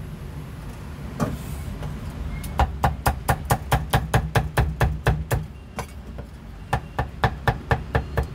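Meat cleaver chopping crispy roast pork belly on a thick round wooden chopping block: a fast run of sharp strikes, about six a second, begins a couple of seconds in, breaks off briefly, then a second run comes near the end. A low steady hum runs underneath.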